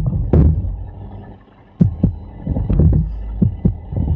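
Low thumps and several sharp clicks over a steady low hum, picked up by a video-call microphone.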